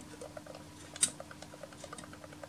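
A CD slipping on the turntable of a Naim NAC D3 CD player, rattling and knocking in a rapid run of light ticks, about eight to ten a second, with one sharper click about a second in. The disc's centre hole is too large for the turntable and the original magnetic puck does not clamp it firmly enough.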